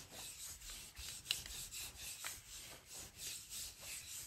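Speedball baren rubbed over rice paper on a gel printing plate, faint repeated soft rubbing strokes about two a second, pressing the paper down to pull the print.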